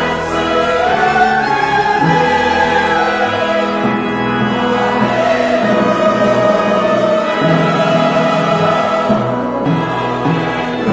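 Church choir singing a hymn in sustained, held notes with instrumental accompaniment.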